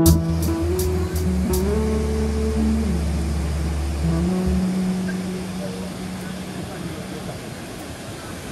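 Background music ending on held notes that fade out about halfway through, leaving the steady rush of the Krka waterfalls.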